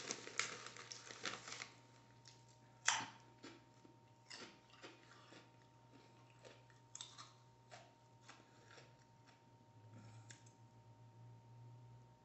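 Faint crunching of a person chewing Doritos 3D Crunch corn snacks: a quick run of crunches at the start, one sharp crunch about three seconds in, then sparser, softer crunches that die away.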